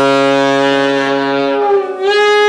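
Alto saxophone holding one long, loud low note that starts with a sharp attack. Near the end the low note drops away and a higher note takes over, bending slightly in pitch.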